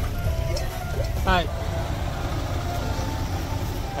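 Mahindra Thar 4x4 engine running with a steady low rumble as the vehicle rolls slowly past, with background music over it.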